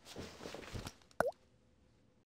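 Logo-animation sound effects: a soft whoosh for about the first second, then a single short pop with a quick bend in pitch a little past the middle.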